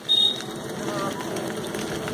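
A short, loud metallic clink just at the start, then steady street-stall bustle with people's voices in the background.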